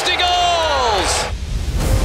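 Hockey broadcast announcer's drawn-out excited shout, one long call falling in pitch that ends about a second in. A whoosh and deep bass music then start.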